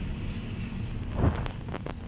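A steady, high-pitched squeal or tone from the N class train at the platform, with a thump about a second in and a few sharp knocks just after.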